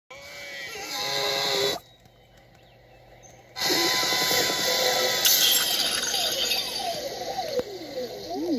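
Soundtrack of an animated short playing from a TV, picked up off the speakers: noisy sound effects and music that drop away about two seconds in and come back loud about three and a half seconds in, with falling whistle-like tones near the end.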